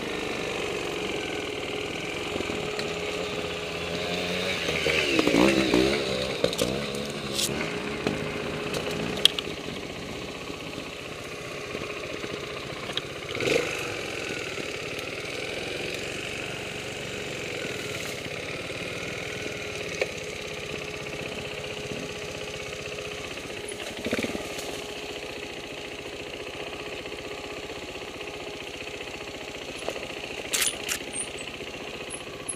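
Trials motorcycle engine running at low revs on a rough woodland trail, swelling and rising in pitch about five seconds in, with a few sharp knocks from the bike over the ground.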